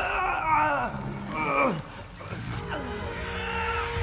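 Animated-film soundtrack: strained, falling vocal cries or groans over film score music, the music settling into held notes near the end.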